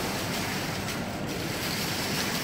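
Steady rushing of falling water from an indoor waterfall feature, an even, unbroken wash of noise.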